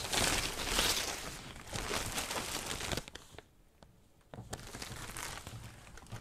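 Thin plastic protective bag crinkling and rustling as it is pulled off a computer monitor, with a short near-silent pause a little after halfway.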